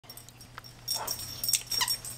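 Boxer puppy yipping at a bigger dog in play: two short, high yips, about a second in and near the end.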